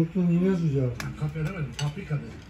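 Metal forks clinking twice, about a second in and near the end, as children eat from them; a voice sounds during the first second.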